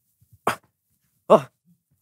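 Two short vocal yelps of 'oh' from a young actor: a brief sharp one about half a second in, then a longer one a second later that dips and rises in pitch.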